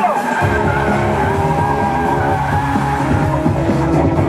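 Tyres of a Subaru Impreza hatchback squealing as it slides through a drift, mixed with a loud music soundtrack.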